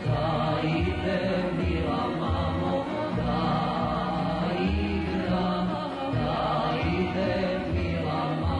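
A man singing a Serbian folk song over instrumental accompaniment with a rhythmic bass line.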